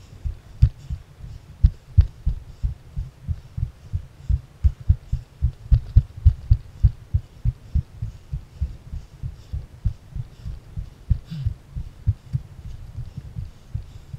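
Muffled low thumps, about three or four a second and uneven in strength, from a hiker's steps and movement jolting a body-worn camera while climbing over rock.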